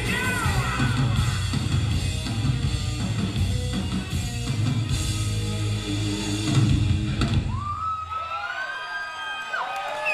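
Rock band playing live with drum kit, electric guitars and bass. About seven and a half seconds in, the drums and bass drop out, leaving a few held, sliding higher tones.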